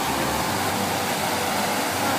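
Public fountain's water jets splashing into the basin: a steady, even rush of water.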